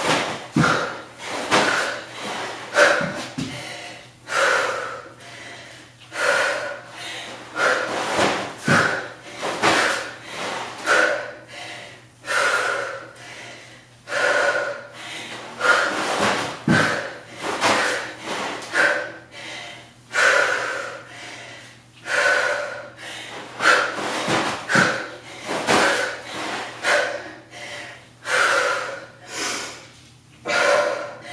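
A woman breathing hard and rhythmically while lifting, with a sharp, forceful exhale about once a second in time with each repetition. A few dull thuds sound now and then.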